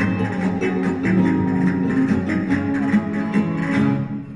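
Several flamenco guitars played together, with steady, rhythmic strokes.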